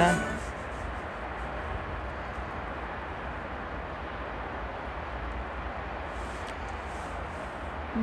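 Steady outdoor background noise: an even hiss with a low hum underneath and no distinct events.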